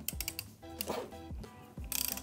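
Half-inch ratchet clicking in a run of irregular ticks as it is cranked in the side of a FEIN KBC 36 compact mag drill, winding the drill head out, over faint background music.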